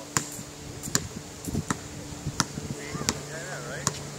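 A basketball being dribbled on a hard court: sharp bounces at an even pace, about every three quarters of a second.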